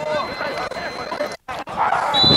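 Voices and shouts from players on the field, with a brief full dropout in the sound about one and a half seconds in.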